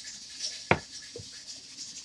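Hands handling a plastic seasoning container: faint scratching and rustling, with one sharp tap about two-thirds of a second in and a couple of lighter ticks around it.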